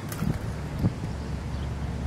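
Steady low rumble of wind on the microphone, with a couple of faint knocks.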